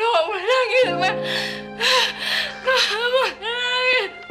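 A young woman crying hard, in wavering wails that rise and fall in pitch, broken by sobbing breaths. Soft background music with long held notes comes in about a second in.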